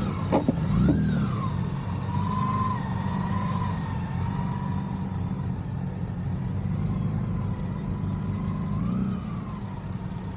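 Motorcycle engine running steadily, with a thin whine that wavers up and down. There are a few sharp knocks about half a second in.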